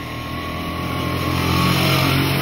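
The Maikäfer prototype's 200 cc single-cylinder two-stroke engine running as the little car drives by, a steady note growing louder as it comes close near the end.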